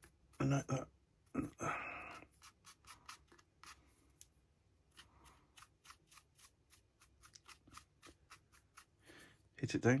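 Stiff paintbrush dry-brushing over a 3D-printed plastic model: the bristles dab and flick across the surface in a quick, uneven run of short scratchy ticks.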